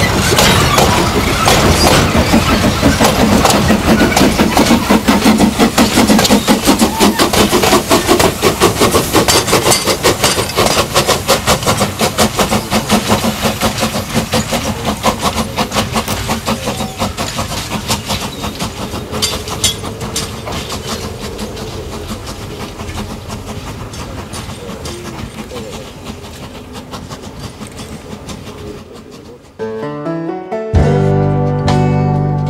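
Narrow-gauge steel side-dump coal wagons rolling past close by, their wheels clattering rapidly over the rail joints, the clatter loud at first and fading steadily as the train draws away.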